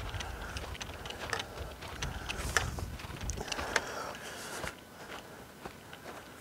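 Footsteps crunching on frosted grass, short irregular crunches about two a second, with a low wind rumble on the microphone for the first few seconds.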